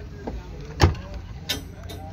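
A sharp knock a little under a second in and a second, lighter knock about half a second later, over a steady low rumble.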